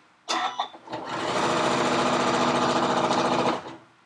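Janome domestic sewing machine stitching at its top speed with the foot pedal held fully down, running steadily for about two and a half seconds and then stopping. A short sound comes just before it gets going.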